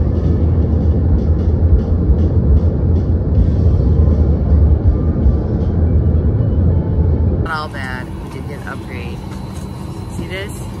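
Loud low rumble of a jet airliner rolling along the runway, heard from inside the cabin. About seven and a half seconds in it cuts off to a quieter steady cabin hum with a woman talking.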